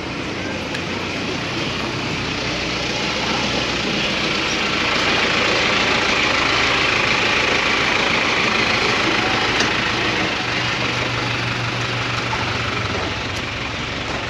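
Motor vehicle engine running close by on a busy market street, the noise swelling to its loudest in the middle, with a steady low hum in the last few seconds.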